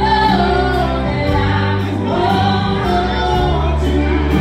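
Live country band performing: a woman sings lead with long held notes over electric guitar, bass, keyboard and a steady cymbal beat.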